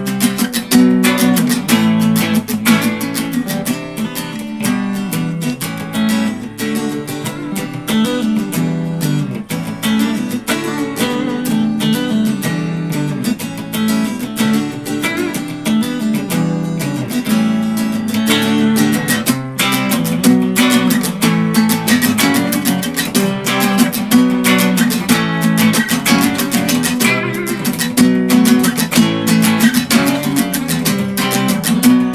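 Two guitars jamming: an acoustic guitar strummed and picked at a fast, busy pace, with an electric guitar playing along.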